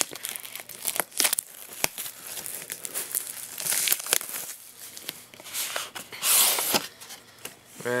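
Clear plastic shrink-wrap being torn and crinkled off a cardboard trading-card box, in irregular crackling bursts with sharp little snaps, the loudest about six seconds in.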